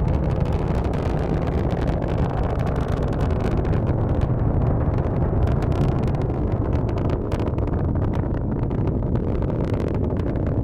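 Falcon 9 rocket's nine first-stage Merlin engines during ascent: a steady deep rumble with a crackle over it.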